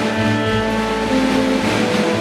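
Small jazz group playing: held electric guitar notes over a low bass line moving in steps, with a soft cymbal wash from the drum kit.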